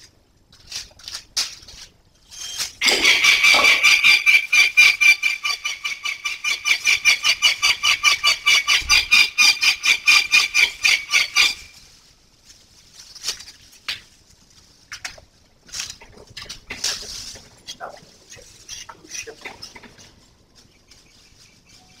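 A young peregrine falcon calls in a rapid run of loud, harsh, evenly repeated notes, about six a second, lasting about nine seconds from about three seconds in: begging or agitated calling at feeding time. Scattered light clicks and knocks of handling follow.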